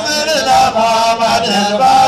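Islamic devotional chanting for the Mawlid: a voice holds a wavering, ornamented melody in long continuous lines, with a steady low tone underneath.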